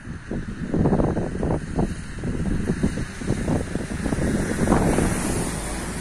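Wind buffeting the microphone in uneven gusts, a rough low rumble.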